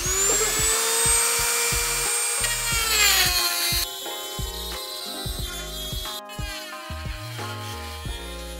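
Corded rotary tool cutting into an aluminum crash bar: it spins up to a high whine, runs steadily, then its pitch drops about three seconds in. Background music with a steady beat plays throughout.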